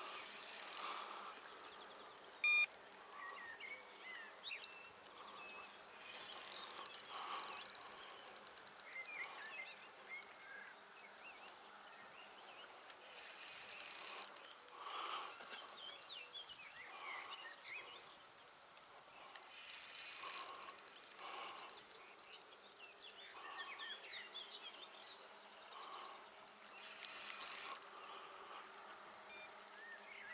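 Faint rural ambience of insects buzzing in repeated high bursts about every six to seven seconds, with scattered bird chirps. A single short beep stands out about two and a half seconds in.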